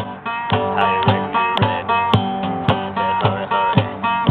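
Acoustic guitar playing a Delta blues intro, struck hard with sharp accented strokes about twice a second between ringing chords.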